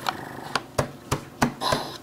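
About six sharp, irregularly spaced knocks and taps as a cardboard takeout box is handled and its lid opened on a table.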